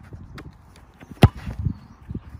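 A football struck once with a sharp thud a little past halfway, with a few lighter taps and scuffs on the artificial turf around it.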